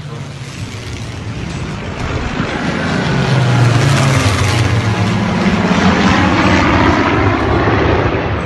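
Propeller-driven fighter planes flying over. Their piston engines grow louder over the first three seconds and stay loud, and the pitch bends down and then back up as they pass.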